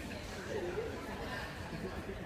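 Indistinct chatter of people talking some way off in a large hall, over steady low background noise.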